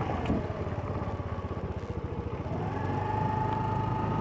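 Motorcycle engine running while riding, its pitch falling soon after the start and rising again from about halfway through.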